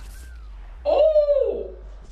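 A woman's high, drawn-out "ooh" of surprise about a second in, rising and then falling in pitch, over a low steady hum.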